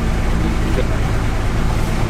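A small boat's motor running at a steady, even hum, with a constant noisy wash over it.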